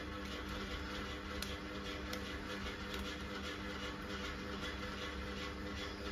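Quiet room tone with a steady low hum, and a few faint clicks and rustles as a plastic LOL Surprise ball is handled and pried at to open its next layer.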